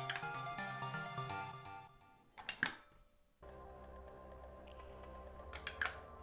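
Loops played from Ableton Live clips: a melodic loop of held notes stops about two seconds in, and a lower, steadier loop starts a second or so later. Sharp clicks from the MeloAudio MIDI Commander's switches being pressed come just before the second loop and again near the end, and are the loudest sounds.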